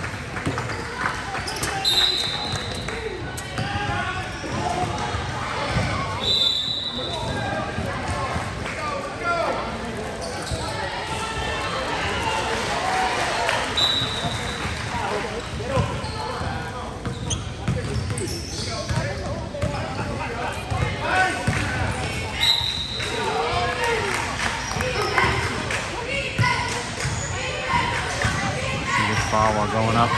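A basketball dribbling and bouncing on a gym floor amid spectators' chatter, echoing in a large hall. Four short, shrill tones are spread through it.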